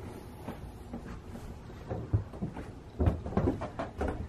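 Quiet room tone broken by a few dull knocks and thumps, one about halfway through and a cluster near the end.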